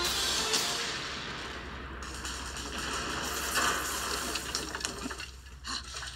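Sound effects from an animated film trailer: a long rushing hiss, loudest in the first two seconds and fading, with music under it, after a missile launch in the scene.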